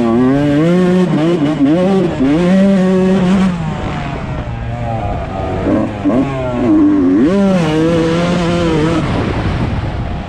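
125cc two-stroke motocross bike engine being ridden hard, its pitch rising and falling repeatedly with throttle and gear changes. It eases to a lower, quieter note around the middle, then revs sharply back up about seven seconds in.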